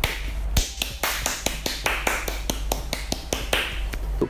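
A quick, even run of sharp clicks or taps, about six a second.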